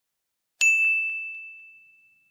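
A single ding sound effect about half a second in: a sharp strike on one high tone that fades out over about a second and a half, marking the change to the next question slide.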